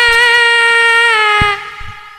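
A female tayub singer holding one long sung note through a microphone, the pitch sagging slightly before it stops about one and a half seconds in. A single low drum stroke sounds just before the note ends.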